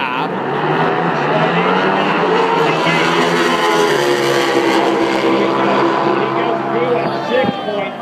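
Pro Stock drag motorcycles making a full-throttle pass down the strip, a loud, steady engine note held for about seven seconds before it drops away near the end.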